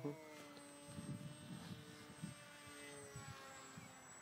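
Faint steady whine of an RC flying wing's motor and propeller passing overhead, its pitch slowly falling over about three seconds, with some irregular low rumbles underneath.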